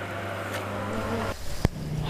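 Steady outdoor background noise with a constant low hum, which cuts off abruptly about a second and a half in, followed by a single sharp click.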